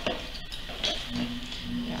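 Electric potter's wheel running, with a few light scrapes and clicks of hands and a tool on wet clay; about a second in, a steady low hum begins.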